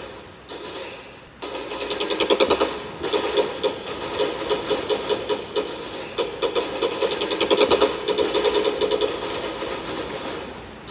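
Rapid automatic gunfire, about ten shots a second, in long bursts that start suddenly a little over a second in, break briefly twice, and tail off near the end.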